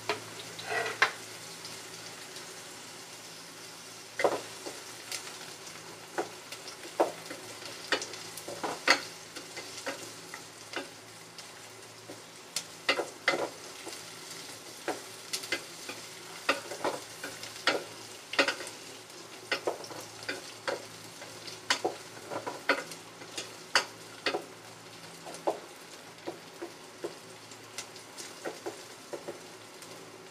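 Ginger and onion sizzling in hot oil in an aluminium pot, with a wooden spatula stirring them and knocking against the pot frequently and irregularly.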